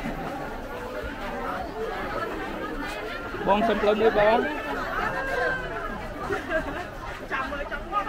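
Overlapping chatter of shoppers and vendors in a busy market, with one voice closer and louder about three and a half seconds in.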